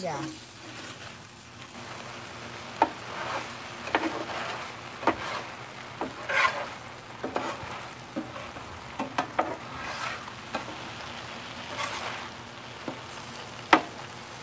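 Metal spatula scraping and clacking on a Blackstone flat-top griddle while stir-frying noodles and vegetables, with a dozen or so sharp scrapes and clicks over a steady sizzle.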